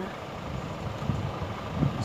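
A vehicle engine running: a low, steady rumble that swells slightly near the end.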